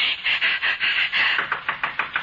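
A person panting in quick, hissy breaths, about four a second, as they hurry along.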